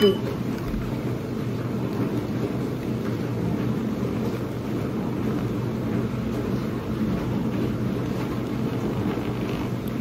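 Tattoo stencil transfer machine running a copy, its motor drawing a sheet of stencil transfer paper through with a steady hum.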